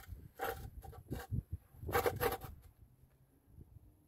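A few short, irregular scrapes and knocks as a long spirit level is shifted and set down on a precast concrete slab while it is checked for level.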